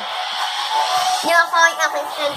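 A child's voice making wordless noises for a play fight: a breathy rush of noise, then a short voiced cry about one and a half seconds in.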